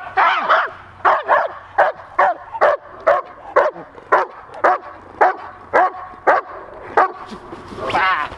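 White shepherd dog barking repeatedly at about two barks a second at a helper holding a bite sleeve. This is protection-sport bark training: the dog barks to win the sleeve.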